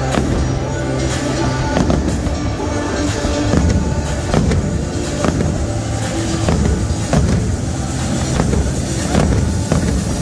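Aerial fireworks shells bursting one after another in a steady barrage, with music playing alongside.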